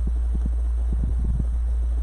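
A steady low hum, with faint, soft knocks and rustles of handling on top.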